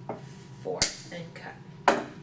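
Small metal chain link snipped through with cutting pliers: a sharp click. A second sharp click follows about a second later.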